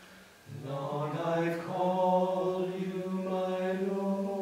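Men's voices singing a slow devotional chant, coming in about half a second in and holding long, sustained notes.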